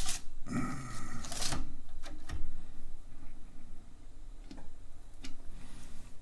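A 5.25-inch floppy disk being slid out of a Kaypro 1's disk drive, with a scraping slide about half a second in, followed by a few separate sharp clicks from the drive door levers being latched.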